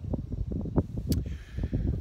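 Wind buffeting the microphone: an uneven, gusting low rumble, with a brief click about a second in.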